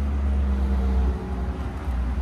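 Steady low rumble of street traffic, with a vehicle engine humming.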